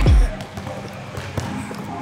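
A hip-hop beat's deep falling bass note cuts off just after the start. Then a basketball bounces on a hardwood court floor, with a sharp knock about halfway through.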